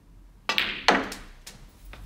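Snooker cue striking the cue ball about half a second in, then a sharper, louder click of cue ball hitting the black, followed by a couple of lighter knocks as the black goes into the pocket.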